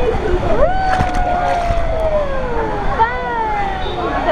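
Voices without clear words: one long drawn-out call held for about two seconds and slowly falling in pitch, then shorter calls near the end, over a steady rush of moving water and background noise.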